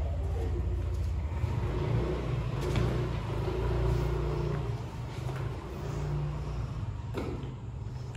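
A low engine rumble that runs steadily, swells about four seconds in, and eases off towards the end.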